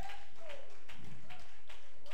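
Steady rhythmic tapping, about three light taps a second, with faint pitched sounds underneath.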